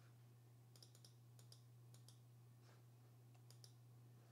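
Faint clicks of a computer mouse, about ten of them in small clusters, over a steady low hum.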